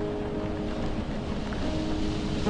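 Steady rain hiss with soft piano notes held and fading beneath it; a new low note comes in near the end.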